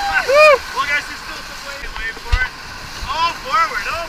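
Rafters whooping and yelling in rising-and-falling calls, in a burst near the start and again about three seconds in, over the steady rush of whitewater rapids. A short low thump comes a little past the middle.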